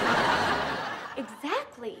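Studio audience laughter from a sitcom laugh track, loudest at the start and dying away, with a short voiced sound near the end.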